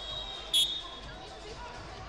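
A single brief, sharp, high-pitched squeal about half a second in, over the general chatter of a large sports hall during a youth wrestling bout.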